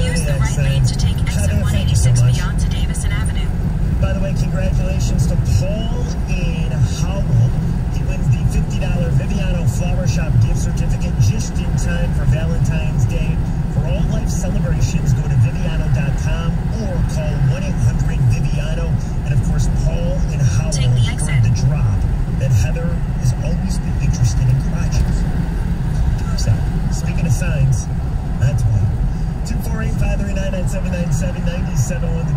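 Steady low road and tyre rumble inside a moving car's cabin at highway speed, with muffled radio talk over it.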